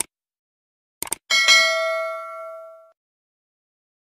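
Subscribe-button animation sound effects: a mouse click, then a quick double click about a second in, followed by a bell ding that rings out and fades over about a second and a half.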